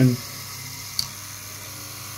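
LEGO 9-volt monorail motor from set 6399 running steadily, unloaded with the train turned upside down, driving in one direction. A single click comes about a second in.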